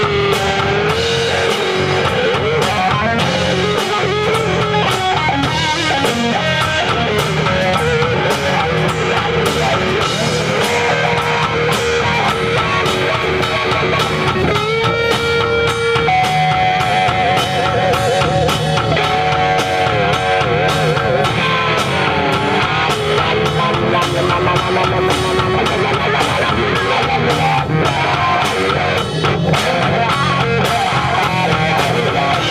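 Live blues-rock band: an electric guitar playing a lead solo through Marshall amplifiers over drums and bass guitar. The solo has long held notes, a note bent upward about halfway through, and wide vibrato soon after.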